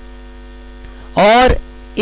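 Steady electrical mains hum with many overtones in the recording, broken about a second in by one short spoken word.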